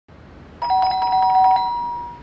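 A two-tone chime, one note held just under and one just over the other, fluttering with a fast pulse. It starts a little way in and fades out near the end.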